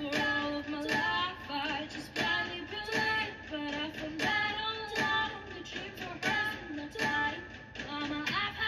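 Music: a woman singing a melody over an instrumental backing with a regular beat.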